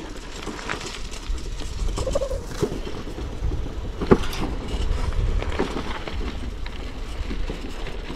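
Bicycle rolling fast downhill: steady low rumble of tyres and wind on the microphone, with the bike and its mount rattling and knocking over the uneven road surface, a sharp knock about four seconds in.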